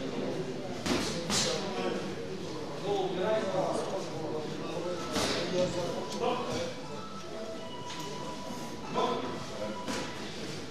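Voices of coaches and spectators shouting and talking around an amateur boxing ring, with a few sharp thuds of gloved punches and feet shuffling on the ring canvas.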